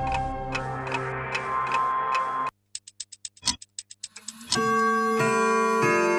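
Music with a beat stops abruptly about two and a half seconds in. After a brief silence comes a run of rapid clock ticks, and then a held musical chord sets in near the middle and carries on.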